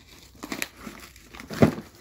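Paper-bag wrapping paper crinkling as a package is handled and twine is pulled around it: a few short rustles, then one sharper, louder crinkle about one and a half seconds in.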